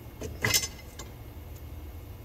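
Metal halves of a Garrett variable-geometry turbocharger being worked apart: the center section comes free of the carboned-up turbine housing with a short clunk about half a second in, then a few light clicks.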